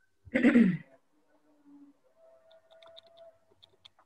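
A brief vocal sound from a participant's microphone, like a short throat-clearing, lasting about half a second. After it comes faint background noise with a few soft clicks.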